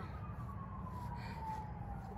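A siren wail, a single tone gliding slowly down in pitch, over a steady low rumble.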